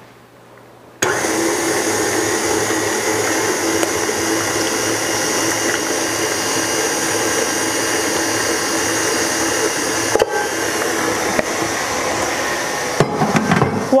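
Tilt-head stand mixer switched on about a second in, its motor running steadily while the beater mixes the rice-flour batter as butter is added; the sound dips briefly once near the end. A few knocks come just before the end.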